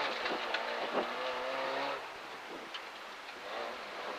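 Peugeot 205 F2000/14 rally car's engine heard from inside the cockpit as the car is driven through a tight bend on a special stage, with a few sharp clicks. The engine note drops in level about halfway through.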